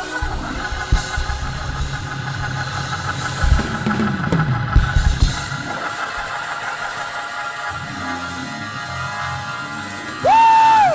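Church worship music: held chords with a few drum hits.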